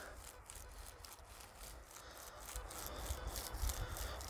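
Faint rustling and scraping in dry crop stubble over a low rumble, picking up a little near the end.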